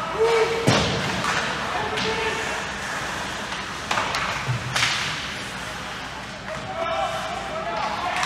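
Ice hockey play in an echoing indoor rink: a few sharp cracks of hockey sticks and puck, with people's voices calling and shouting, louder near the end.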